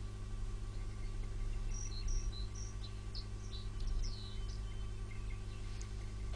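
Quiet background: a steady low hum, with a few short, faint high-pitched chirps scattered through the middle.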